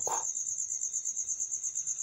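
Insects chirping: a steady, high-pitched pulsing trill of about six or seven pulses a second.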